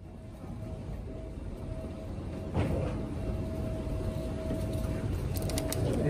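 Steady low rumble of airport terminal background noise with a constant mid-pitched hum, growing a little louder, and a few sharp clicks near the end.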